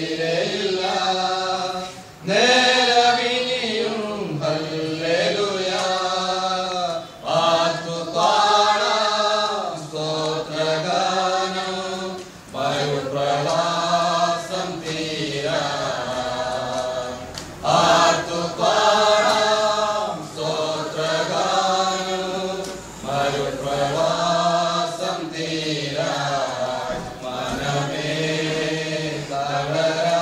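Slow, unaccompanied hymn singing: long held notes in phrases of a few seconds, with short breaks for breath between them.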